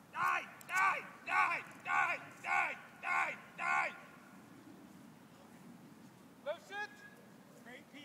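A person's voice close to the microphone calls out seven short, even syllables in a steady rhythm, about two a second. Two brief rising calls follow near the end.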